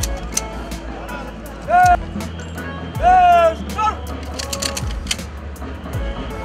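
A loud, drawn-out voice call rings out about two seconds in and a longer one about three seconds in, over background music and a steady low hum, with scattered short clicks or beats.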